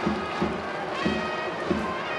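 Stadium cheering band: trumpets playing a repeated tune over a steady drum beat.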